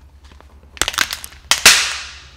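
A quick run of sharp cracks and snaps, ending in one loud crack that trails off in a hiss.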